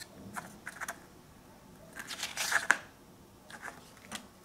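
Paper pages of a CD photobooklet being handled and turned: short rustles and light clicks, with a longer, louder rustle about two seconds in.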